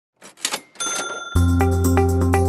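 A few quick clicks and a bright ringing ding, a title sound effect, then music with a steady deep bass and repeated short notes starts about a second and a half in.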